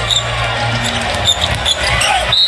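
Basketball game play in a large arena: steady crowd murmur with a ball being dribbled on the hardwood court and a few short high squeaks.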